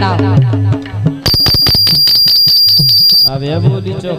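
Bundeli Rai folk music: a voice with harmonium, then about a second in a fast drum roll under a loud, steady, high shrill tone for about two seconds, after which the singing and harmonium come back.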